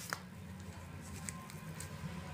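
Small clicks and rustles from hands working long hair and a hair clip, with one sharper click just after the start and a few faint ticks later, over a steady low hum.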